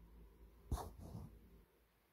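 A short, breathy vocal sound from the narrator about three quarters of a second in, in an otherwise quiet pause.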